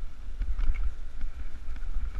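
Wind buffeting the camera microphone as a mountain bike rolls fast down a rough dirt track. Scattered light rattles and clicks from the bike over the bumps.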